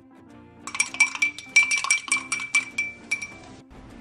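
A spoon clinking against the inside of a drinking glass in a quick run of ringing clinks, about five a second, as tamarind paste is stirred into water. The clinks start about a second in and stop shortly before the end, over soft background music.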